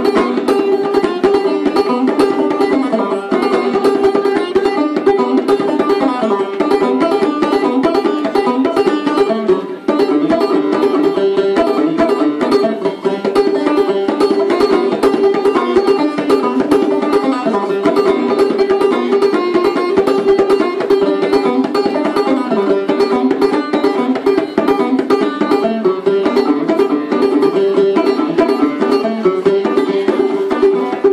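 Solo banjo playing a medley of traditional American tunes: a fast, steady stream of plucked notes, with a brief dip about ten seconds in.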